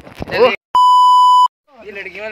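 A single steady high-pitched censor bleep, under a second long, dropped over a spoken word, switching on and off abruptly with a dead gap of silence on either side; talking before and after it.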